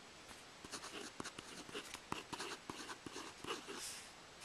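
Marker pen scratching across paper in a run of short, irregular strokes as letters are written out by hand.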